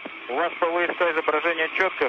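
Speech over a space-to-ground radio link, thin and band-limited over a steady hiss, starting about a third of a second in.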